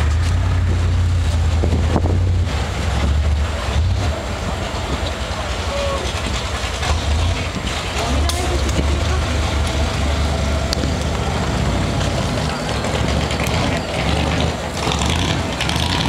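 A car engine running with a steady, deep low rumble that eases briefly a couple of times.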